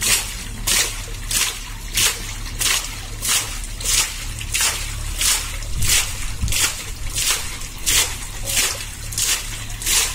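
Muddy water and slurry splashing out of the top of a borewell pipe in a steady rhythm, about three spurts every two seconds, as the pipe is worked up and down with a bamboo lever and a palm caps and releases its mouth: hand-sludging a tube well into the ground.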